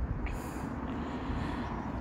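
Steady background noise: a low rumble with a faint hiss, and no distinct event.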